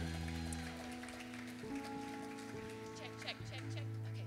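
Soft sustained keyboard chords as background music, shifting to new chords about a second and a half in and again near the end, over scattered audience applause.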